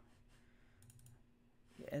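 A few faint clicks from computer input at the desk, over a low steady hum; a word of speech begins right at the end.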